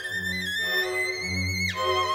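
Solo violin with orchestral accompaniment: the violin holds high notes that step upward, then makes a fast downward run about three-quarters of the way through, over low sustained orchestral strings.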